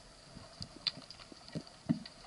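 Underwater ambience picked up by a submerged camera: scattered, irregular clicks and low knocks, the loudest one near the end, over a faint steady high tone.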